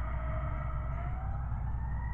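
Emergency vehicle siren wailing, its pitch gliding slowly upward, over a low steady rumble.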